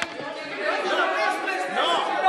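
Several voices talking over one another in a large hall, a murmur of chatter with no single clear speaker.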